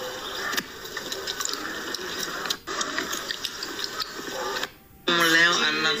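Indistinct, muffled room noise with faint voices in the background. It drops out for a moment about five seconds in, then a clear voice starts.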